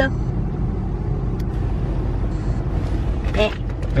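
Steady low rumbling buzz inside a car's cabin, a noise the occupants cannot place and suspect is a phone vibrating.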